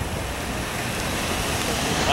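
Harbor police Ford SUV rolling slowly past close by: a steady rushing noise of tyres and engine that grows slightly louder as it nears.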